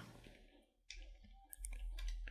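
A few faint computer keyboard keystroke clicks, one about a second in and a couple more about a second and a half in.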